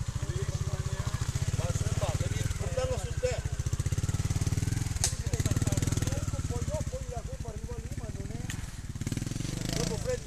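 Trials motorcycle engine running steadily at low revs, with a sharp click about halfway through.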